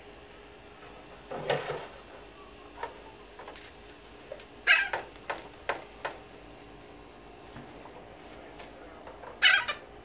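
Captive parrots in an aviary giving loud, harsh squawks at feeding time. There are three main calls, about one and a half, five and nine and a half seconds in, with smaller calls and clicks between them.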